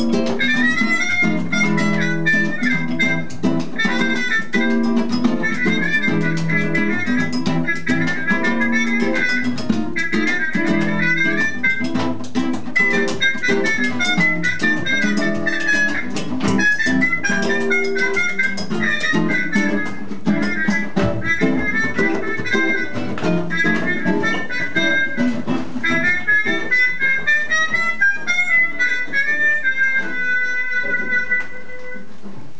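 Acoustic band playing an instrumental passage: strummed strings keep a rhythm while a harmonica plays a fast, busy melody.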